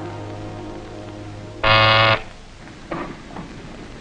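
The tail of a held orchestral chord fading out, then an office intercom buzzer sounding once, a steady buzz lasting about half a second, summoning the officer at the desk.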